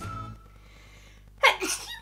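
A woman's sudden, short, breathy burst of laughter about one and a half seconds in.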